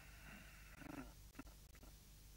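Near silence: a faint, steady high whine that cuts off about halfway through, followed by two faint clicks.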